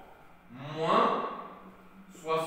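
A man's voice making one drawn-out wordless sound, rising in pitch, lasting about a second.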